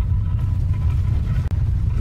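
A steady, deep low rumble from an animated intro's soundtrack, with a faint thin high tone over it. It drops out for an instant about one and a half seconds in.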